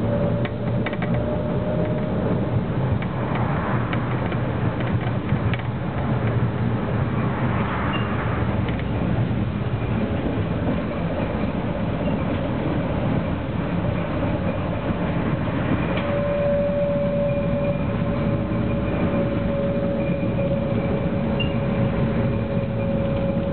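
Electric tram running along its track, heard from inside the car: a steady rumble with occasional clicks, and a whine that fades after about two seconds and returns about sixteen seconds in.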